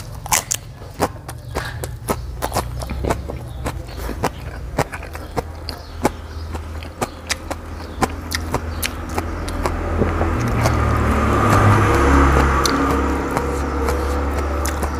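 Close-up crunching and chewing of crisp raw vegetables, sharp irregular crunches about one or two a second. From about ten seconds in, a low rumbling noise swells in the background and eases off again near the end.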